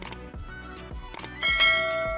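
Subscribe-button animation sound effect: a few short clicks, then a bright bell ding about one and a half seconds in that rings on and slowly fades. Background music plays underneath.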